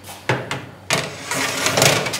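A metal baking tray sliding into an oven, scraping along the rack, after a short knock. The scraping noise grows louder toward the end.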